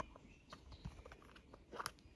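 Faint handling of a clear plastic coaster cover: a few light plastic clicks and small rustles, the clearest just before the end.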